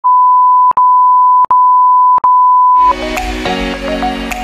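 A loud, steady single-pitch electronic beep, broken three times by brief clicking dropouts about three quarters of a second apart, cutting off just before three seconds in as music with a beat starts.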